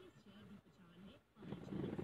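A man's low voice talking indistinctly, too faint to make out words, becoming louder about one and a half seconds in.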